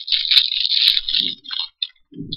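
Plastic packaging crinkling and crackling as it is handled, with small sharp clicks. It thins out about a second and a half in.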